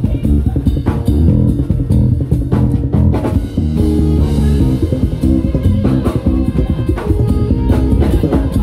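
Vintage Music Man StingRay 5 five-string electric bass played through a bass amp, a busy line of low notes, with a drum kit groove playing along.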